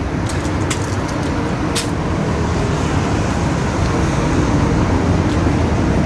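Steady road traffic noise from vehicles passing on a multi-lane road, slowly growing louder.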